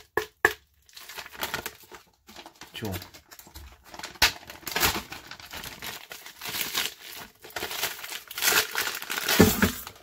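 A zip-top plastic freezer bag crinkling as it is handled and pulled open, with frozen chicken thighs being taken out of it. The rustling comes in repeated bursts, loudest about a second before the end.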